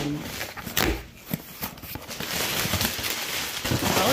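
Paper and a cardboard box being handled. A couple of knocks come about a second in, then a steady rustling of packing paper from about halfway through.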